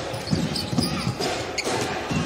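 Basketball dribbled on a hardwood court, a run of short thuds over arena crowd noise.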